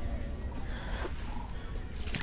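Steady low rumble of strong wind buffeting the ice-fishing shelter, with a brief rustle about a second in.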